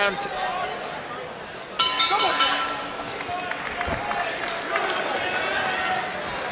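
Boxing ring bell struck several times in quick succession about two seconds in, its tone ringing on and fading: the bell ending the round. Arena crowd noise and shouting underneath.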